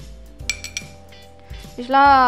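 A ringing clink of a ceramic bowl against a stainless steel mixer-grinder jar about half a second in, then a few faint ticks, as millet is tipped into the jar.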